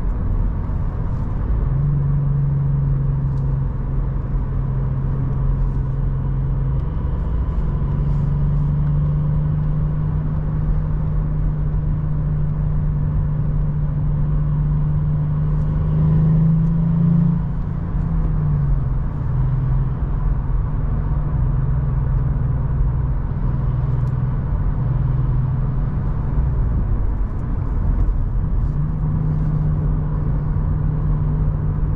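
Volkswagen up! GTI's 1.0 TSI three-cylinder turbo petrol engine humming at a steady cruise, heard inside the cabin over tyre and road noise. The engine note rises slightly about sixteen seconds in, then drops and eases off, and picks up again near the end.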